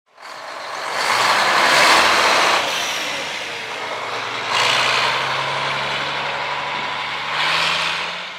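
1985 Mack R-model wrecker's EconoDyne diesel engine pulling away, its sound swelling in three surges as the truck drives off.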